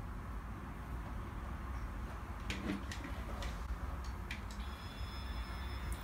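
Conair automatic curl styler being clamped onto a thin strand of hair: a few sharp plastic clicks of handling, then a faint, steady high-pitched sound from the styler starting near the end.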